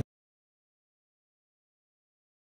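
Complete silence: the soundtrack is muted, with nothing audible.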